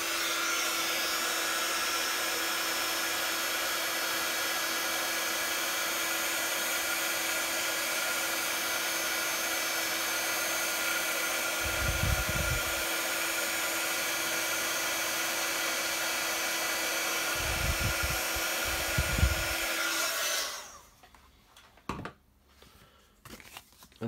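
Embossing heat tool blowing hot air steadily with a low hum, melting white embossing powder on cardstock as it is heated from the back of the card. It switches off suddenly a few seconds before the end, leaving a few quiet clicks of the card being handled.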